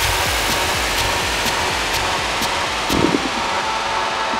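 Techno track in a noisy section: a dense, steady wash of noise over light, evenly spaced hits about two a second. The low end drops away near the end.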